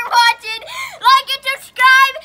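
A young girl singing in short, high-pitched phrases.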